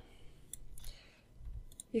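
Wireless Logitech computer mouse clicking: a few short, sharp clicks, about half a second in and again near the end.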